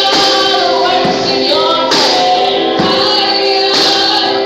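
Two women singing a gospel worship song into microphones, holding and sliding between long sung notes.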